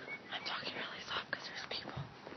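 Soft whispering close to a handheld phone's microphone, in short irregular breathy bursts with no voiced sound.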